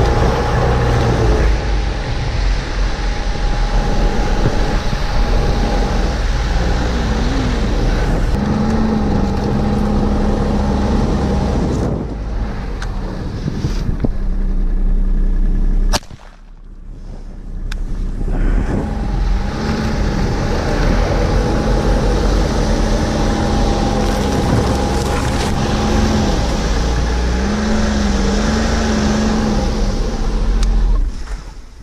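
Snowmobile engine, a Ski-Doo Skandic 900 ACE, running steadily with its pitch rising and falling a little as it travels. A single 12-gauge shotgun shot cracks out about halfway through. For a couple of seconds after the shot the engine sound is much quieter, then it comes back.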